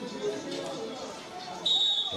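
A referee's whistle starts a steady blast near the end: the full-time whistle. Before it there are only faint voices and background music.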